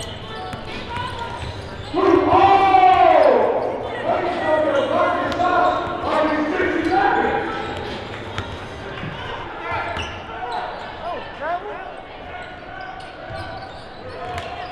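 Gym sound during a basketball game: a basketball bouncing on the hardwood court amid voices echoing in the hall, with a loud shout that falls in pitch about two seconds in.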